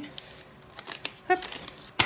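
A few small taps and soft rustles of a cardboard advent calendar box being handled and closed.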